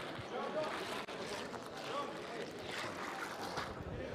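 Indistinct, low voices and background chatter, with no single clear sound standing out.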